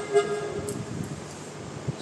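Harmonium holding a note that fades away within the first half second, leaving a faint lingering drone. A soft thump comes just before the end.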